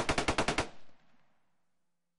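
Gunfire sound effect: a rapid burst of about nine shots in well under a second, then an echo dying away by about a second and a half in.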